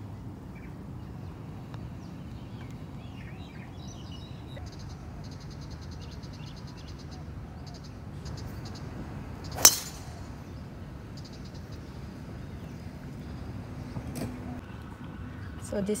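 Golf driver striking a ball off the tee: one sharp crack about ten seconds in.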